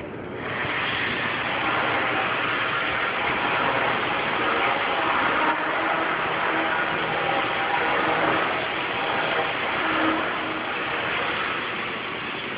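A machine running steadily with a loud, even noise. It comes on about half a second in and eases off near the end.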